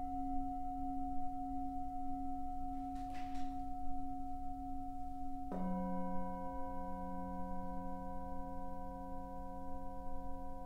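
Tibetan singing bowls struck with a padded mallet. A bowl already ringing holds its tone with a slow wavering hum, and about five and a half seconds in a second, lower-pitched bowl is struck, so both ring together. A brief soft rustle about three seconds in.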